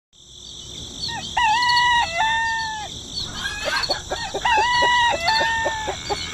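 A rooster crows twice, with short clucking calls in between and a steady high-pitched background throughout.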